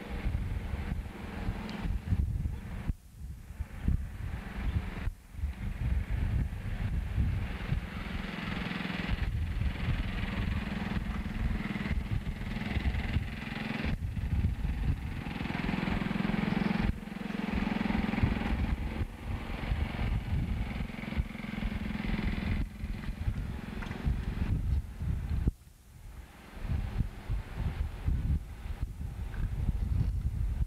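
A distant engine running steadily, its hum swelling and fading in level, with rumble on the microphone.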